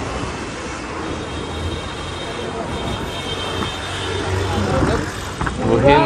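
Steady city road traffic heard from the open upper deck of a moving tour bus: a continuous rumble of engines and tyres with a faint murmur of voices.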